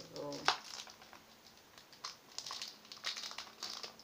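Product packaging being crinkled and handled as it is worked open, with irregular crackles that come thicker in the second half.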